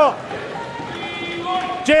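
Background voices in a legislative chamber: opposition members shouting slogans in a drawn-out, chant-like way beneath a pause in the main speech. A man's speech breaks off just at the start and resumes near the end.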